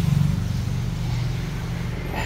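Honda Click 150i scooter's single-cylinder engine idling steadily, a low even hum.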